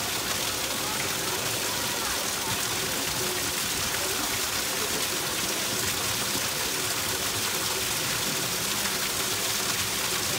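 Steady rushing of water, with people's voices faint in the background.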